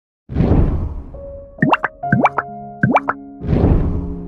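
Intro jingle made of sound effects: a whoosh, then three quick rising plops over held synth notes, then a second whoosh near the end that runs into soft sustained music.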